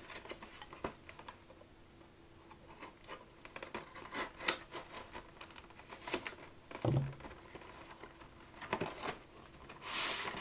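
A cardboard trading-card collection box being unwrapped and opened by hand: plastic wrap crinkling and tearing, with scattered scrapes and clicks as the seal is worked open.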